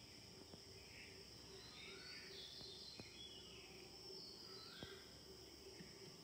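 Near silence: faint room tone with a few faint high chirps in the first few seconds.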